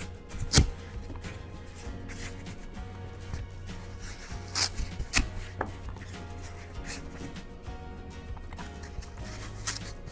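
Oasis foam grow-cube sheet being snapped apart and the strips pressed into a plastic mesh tray: a few sharp snaps and taps, the loudest about half a second in, over soft background music.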